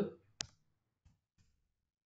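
Computer keyboard keystrokes during a text edit. There is one sharp click about half a second in, then two faint clicks a little later.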